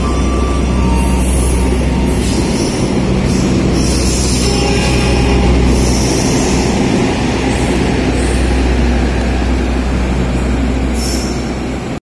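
Bima executive passenger train's coaches rolling out of the station: a loud, steady low rumble of wheels on rail, with brief high-pitched wheel squeals every second or two. The sound eases slightly near the end as the last coach goes by.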